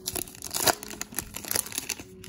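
Crimped foil wrapper of a trading-card pack crinkling and tearing as hands pull it open, a quick run of crackles.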